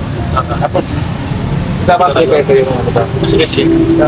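Men talking in conversation, with a steady low rumble of road traffic underneath.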